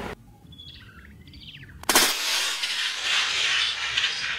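A few faint bird chirps over a quiet pause. About two seconds in, a loud steady hiss cuts in suddenly and carries on.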